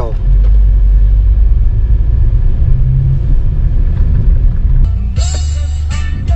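Steady low rumble of a car's engine and road noise heard inside the moving car's cabin. About five seconds in, music starts over it.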